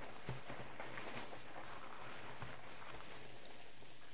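Soft rustling and crinkling of packing material as hands dig through a cardboard box, with a few faint clicks, over a steady low hum.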